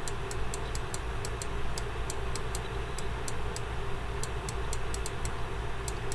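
Stylus tips tapping on a pen-tablet or touchscreen surface while writing by hand: a run of light, irregular ticks, about four a second, over a steady background hiss and hum.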